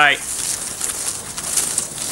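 Paper raffle tickets rustling and scraping as a hand stirs them around inside a felt hat.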